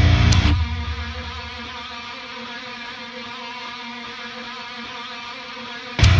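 Heavy metal music stops about half a second in, leaving one held electric guitar chord ringing on. It fades over the next second or so and then sustains steadily.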